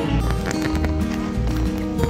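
Background music: a lively instrumental tune with held notes over a steady, repeating bass.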